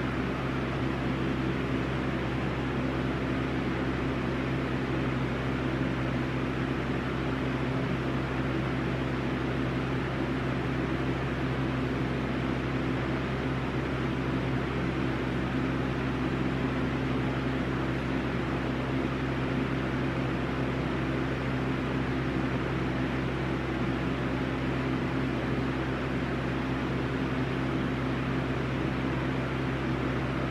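A steady mechanical hum with an even hiss, as from a running fan, unchanging throughout.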